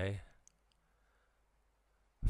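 A man's lecturing voice trails off at the end of a word, followed by a faint click or two about half a second in, then quiet room tone for the pause.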